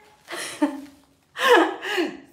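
A woman's breathy laugh: a short gasping burst of breath about half a second in, then her voice again near the end.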